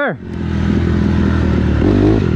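Dirt bike engine running under way on a motocross track, starting about a quarter of a second in and growing louder over the first second before holding a steady note.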